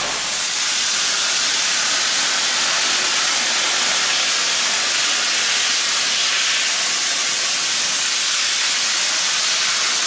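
Steam hissing steadily from a standing LMS Jubilee 4-6-0 steam locomotive, 45699 Galatea, with steam pouring out around its cylinders and front end. There is no exhaust beat.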